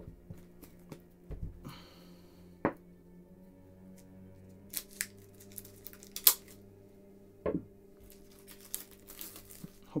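Plastic shrink-wrap being cut and peeled off a boxed Blu-ray set: scattered crinkles and small tearing sounds with a few sharp cracks. The loudest crack comes a little after six seconds, and a burst of crinkling comes near the end.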